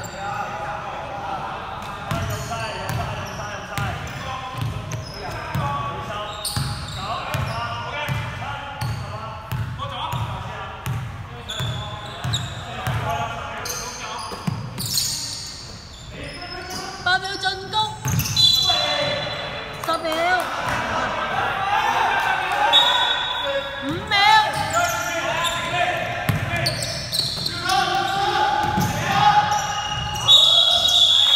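A basketball dribbled on a hardwood gym floor, bouncing about twice a second, with the thumps echoing in a large hall. Shoe squeaks come later.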